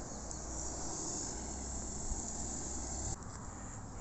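Steady outdoor background: an even, high insect chorus over a low rumble. The high part eases off about three seconds in.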